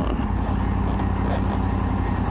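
Motorcycle engine running steadily while riding in highway traffic, an even low hum mixed with steady road and wind noise.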